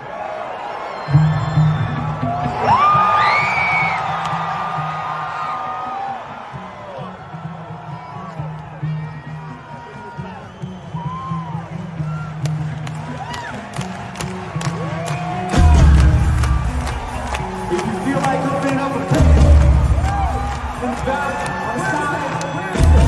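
A live arena rock concert playing back: a low bass drone comes in about a second in, with the crowd cheering and whooping over it. Heavy deep bass swells in twice in the second half as the song builds.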